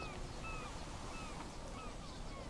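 Birds calling: short chirps that slide down in pitch, two or three a second, over a low steady background.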